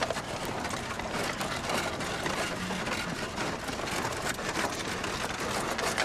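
Steady heavy rain, an even hiss with fine pattering.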